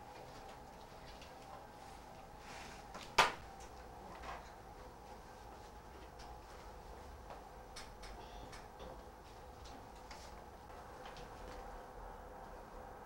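Quiet room tone with a faint steady hum, broken by one sharp click about three seconds in, a softer click about a second later, and a few faint ticks.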